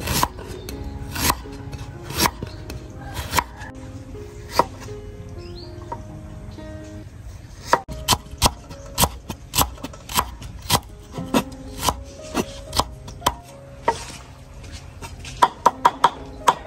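Cleaver chopping fresh ginger on a thick wooden cutting board: sharp knocks of the blade on the wood, about one a second at first, then a pause. After that it runs faster, about two a second, and comes in quick runs near the end. Soft background music plays underneath.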